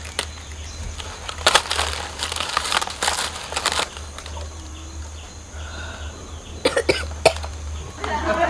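A man coughing in a few short bursts, about a second and a half in, again around three seconds and near the end, over a steady low hum.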